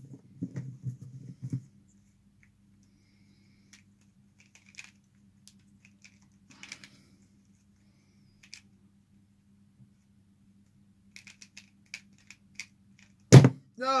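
Plastic pyraminx being turned in a speedsolve: handling noise about a second in, then sparse light clicks of the turning layers, and a quick run of clicks near the end. It finishes with one loud slap as the hands come down on the speedcubing timer to stop it.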